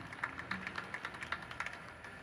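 Faint scattered hand claps from a crowd, several sharp claps a second at an uneven pace, thinning out.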